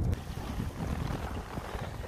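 Wind rumbling and buffeting on the microphone, an irregular low noise without pitch, along with faint rustling as the camera is moved.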